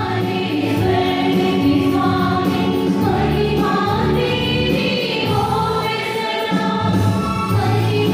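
A women's choir singing a hymn into microphones, accompanied by an electronic keyboard.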